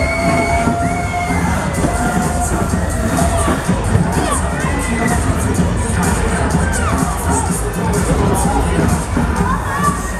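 Riders on a Discotrain fairground ride screaming and shouting, with long drawn-out screams in the first few seconds, over loud music with a steady bass beat.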